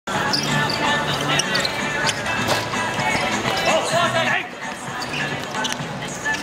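A football being kicked and thudding on a hard outdoor court, a few sharp knocks in the first half, over players and spectators talking and calling out, with one louder shout about two-thirds through.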